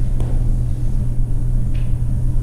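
Steady low hum with rumble beneath it, a constant background in the room recording. There is a faint click just after the start and a brief soft hiss near the end.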